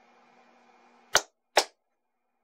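Two sharp hand claps about half a second apart, the double clap used to switch off a clap-activated light.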